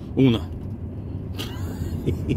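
Steady low rumble of a lorry's engine and tyres heard from inside the cab while driving slowly, with a brief sharp click about one and a half seconds in.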